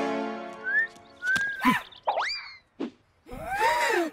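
Cartoon sound effects: a held music chord dies away, then a quick string of sliding whistle and boing-like swoops with sharp snaps. Near the end comes a squeaky, warbling cartoon cry.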